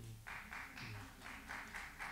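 Faint noise from a seated audience, with light scattered clapping.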